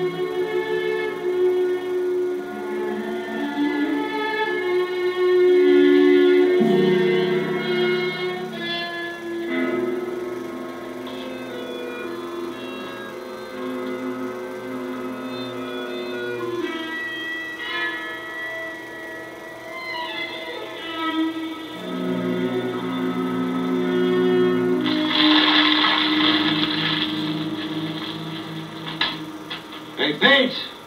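Film score music: a slow melody of held notes led by a harmonica, swelling into a louder, fuller passage about 25 seconds in.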